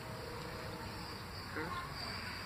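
Quiet outdoor background with a faint, steady, high-pitched insect chirring.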